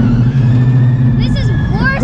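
Roller coaster car running along its steel track, a steady low rumbling hum that eases off about 1.4 s in, with short bursts of voices in the last half second.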